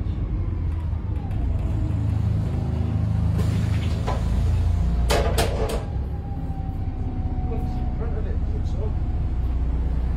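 Inside a moving VDL SB200 Wright Pulsar 2 single-deck bus: the engine and drivetrain run with a steady low rumble, easing slightly about six seconds in. A few sharp clicks come from the cabin about halfway through.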